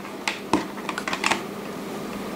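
Light plastic clicks and taps, about half a dozen, from handling a USB power meter and its cables while getting ready to plug it in.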